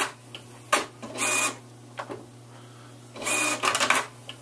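Lexmark Z715 inkjet printer's mechanism running in two short bursts, about a second in and again near the end, with a click before the first. It shows the printer is powered on even though the computer reports that it cannot communicate with it.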